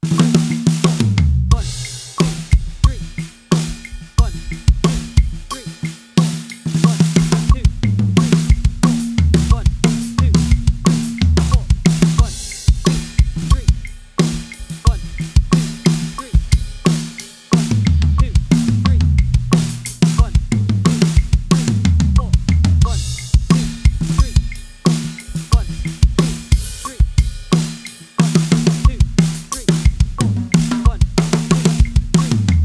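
Acoustic drum kit played at a medium tempo: two-bar linear fills in a 6-6-4 grouping, moved around the snare, toms, bass drum and cymbals, with runs stepping down from the high toms to the low ones. There are several short examples, with brief gaps between them.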